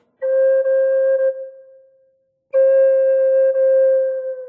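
Taos Pueblo-style Native American flute in F minor by Russ Wolf playing a single note: held for about a second, then tapering off. After a brief silence the same note comes back and is held. The rest is deliberate, silence used as part of improvising on one note.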